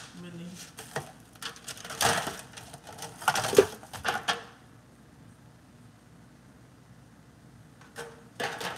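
Kitchen handling noise close to the microphone: a run of clicks, knocks and rustles as things are handled on the counter and near the phone. It stops about halfway, leaving only low room background.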